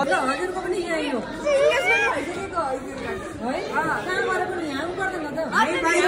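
Several people talking over one another, lively chatter in a large hall.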